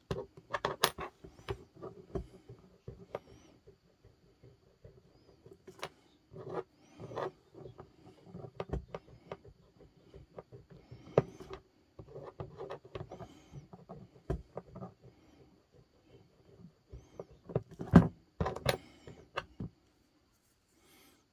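An eraser rubbing a red-copper 5-won coin on a plastic tray to polish off tarnish: irregular bursts of scrubbing with light taps, and a louder knock or two near the end.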